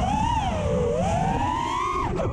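FPV quadcopter's iFlight XING 2207 2450kV brushless motors and propellers whining in flight as heard on the onboard camera, over a low wind rumble. The pitch rises a little, dips about a second in, then climbs steadily as the throttle comes up.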